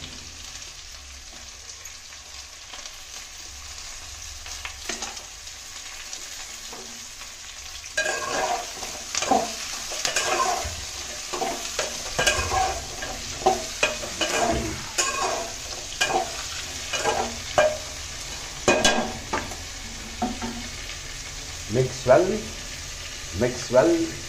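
Onions, coconut pieces and tomato sizzling in hot oil in an aluminium pot. About a third of the way in, a spatula starts stirring and scraping against the pot in irregular strokes, about one a second, over the steady sizzle.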